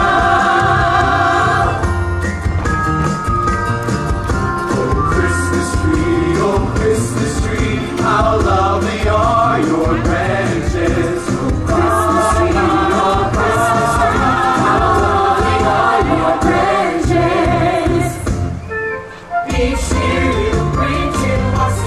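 A choir of voices singing into handheld microphones over amplified backing music with a steady bass; the sound briefly drops off near the end before the music comes back.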